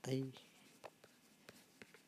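Faint scratching and light ticks of a stylus on a tablet as handwriting is drawn, with a few short taps.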